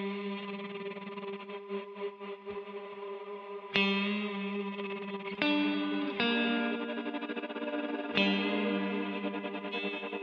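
Electric guitar playing a few long sustained notes through a shimmer-like reverb chain, with a Soundtoys Tremolator rapidly pulsing the level of the ringing tails. New notes come in about four, five and a half, six and eight seconds in. The tremolo's depth and rate are automated, so the pulsing is not steady.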